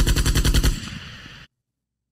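Machine-gun fire sound effect: a rapid, even burst of shots that stops about three-quarters of a second in and trails off in an echoing tail.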